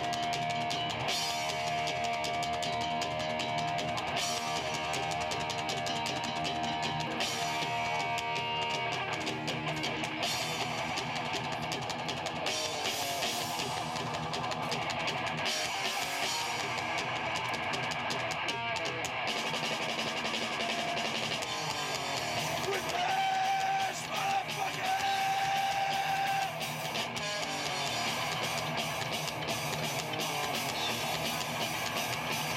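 A live rock band playing through PA speakers: electric guitar and drum kit, with one long held note a little over two-thirds of the way through.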